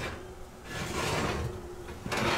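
Metal oven rack being pulled out on its runners: a metal-on-metal scraping slide lasting under a second, about halfway through.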